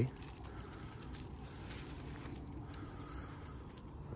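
Faint, steady, low background rumble of outdoor ambience, with no distinct events.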